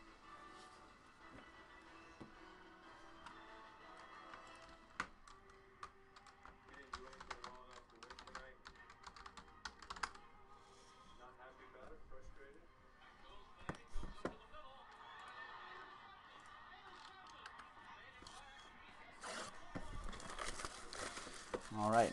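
Faint, irregular computer keyboard typing with a few sharper clicks and knocks, under faint background broadcast audio. Near the end, a longer rustling of cardboard boxes being handled and set down.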